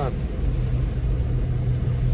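Car driving on a wet road, heard from inside the cabin: a steady low drone of engine and tyre noise with no change in pitch.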